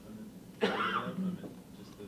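A person coughs once, about half a second in, in a short burst under a second long.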